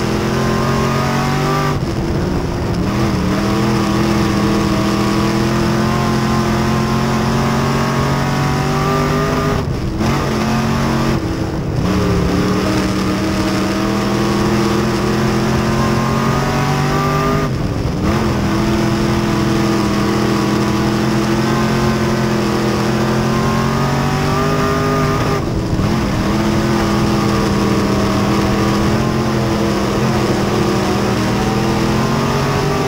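Midwest Modified dirt race car's V8 engine heard from inside the cockpit, run hard at racing speed. Its pitch climbs slowly along each straight, then drops briefly as the throttle is lifted, about five times.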